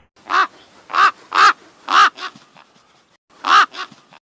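Crow cawing: a run of short harsh caws in the first two seconds, a pause, then two more near the end before it cuts off abruptly.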